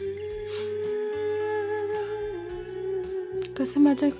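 Slow background music: a melody of long held notes that step from pitch to pitch over a soft, steady low accompaniment.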